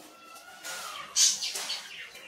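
Coloured pencil scratching across paper in short back-and-forth strokes, with the loudest stroke just past a second in.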